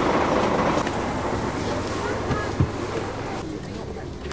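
People talking in the background over the low, steady running of a coach's engine, with a single thump about two and a half seconds in. The sound fades slowly toward the end.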